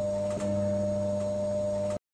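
LG top-loading automatic washing machine running its Air Dry cycle, a long spin: the motor turning the drum with a steady hum, and a light click about half a second in.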